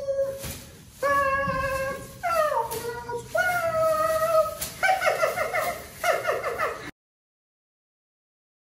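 A high, wordless wailing voice sings a string of long held notes that slide up and down in pitch. The last notes waver rapidly, and the sound cuts off suddenly about seven seconds in.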